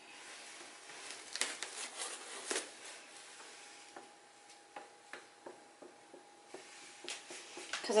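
Quiet, scattered soft taps and handling noises of a paint-coated latex balloon being dabbed against the wet acrylic along a canvas edge.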